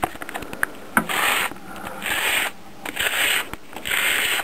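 Hand sanding: the edge of a five-ply wooden fingerboard blank is pushed back and forth along a sheet of sandpaper laid flat, in three strokes about a second apart, to bring the blank down to width. A few light handling clicks come in the first second.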